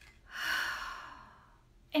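A woman's sigh: one breathy exhale that starts about a third of a second in and fades away over about a second.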